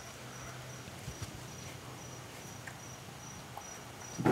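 Faint insect chirping: a short high chirp repeated evenly about two to three times a second, over a low steady hum.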